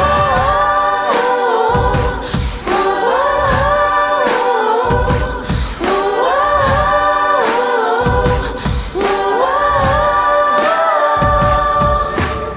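A woman singing a Tibetan-language song through a microphone in long melodic phrases that rise and fall, over a steady beat about twice a second.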